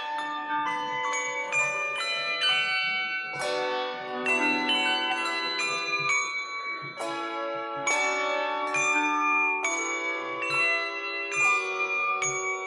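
A handbell choir playing: chords of struck handbells follow one another about every half second, each ringing on with a long sustain under the next.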